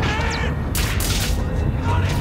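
Film sound effects of a sinking ship: a deep, steady rumble with people shouting and screaming at the start, then sharp bursts of crashing noise.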